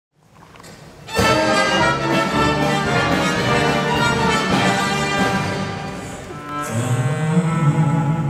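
Symphony orchestra playing a song's instrumental introduction, strings to the fore: a faint start, a loud full entry about a second in, easing off, then low sustained string notes swelling near the end.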